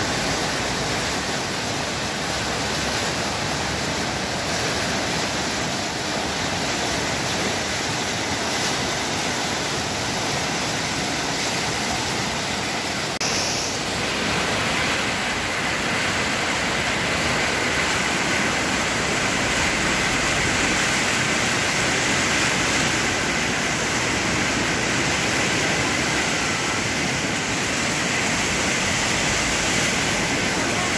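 Swollen floodwater rushing and churning through a walled channel, a steady, loud rush of water that grows slightly louder about halfway through.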